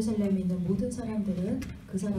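Only speech: one voice talking, with no other distinct sound.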